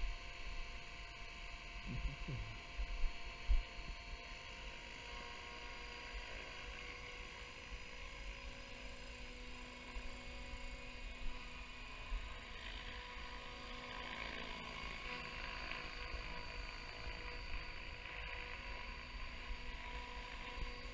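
Electric RC helicopter (550 size, 6S battery) spooling up and lifting off: a steady whine of the motor and gears with the hum of the rotors. The sound grows fuller from about halfway through, with a few low wind thumps on the microphone early on.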